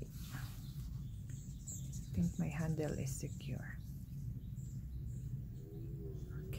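Faint, indistinct voice sounds between about two and four seconds in, over a steady low hum.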